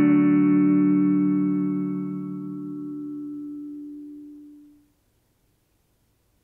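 The last chord of the song ringing out on a sustained instrument, its tones dying away steadily until it fades to silence about five seconds in.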